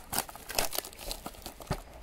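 Clear plastic shrink-wrap crinkling in irregular crackles as hands peel it off a cardboard trading-card blaster box.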